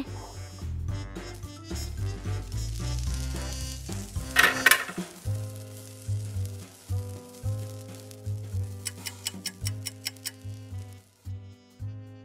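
Sizzling as of waffles cooking, fading after about five seconds, over soft background music.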